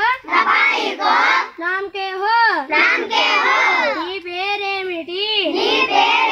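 A group of young children singing a song together in unison, in short phrases with brief breaths between them.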